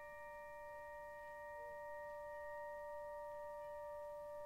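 Quiet live chamber-ensemble music: a chord of several pure, bell-like tones, struck just before and left ringing steadily, with no voice.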